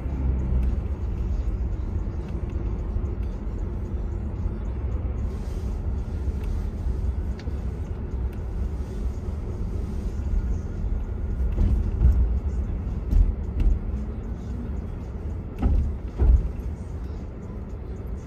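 Steady low rumble of a car driving on city streets, with a few louder thumps in the second half.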